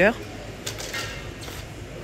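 Low, steady background noise of a supermarket aisle, with a couple of faint light ticks about a second in.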